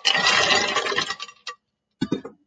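Ice cubes clattering out of a stainless steel bowl onto a plastic soda bottle and into a ceramic bowl, stopping after about a second, followed by a single clink.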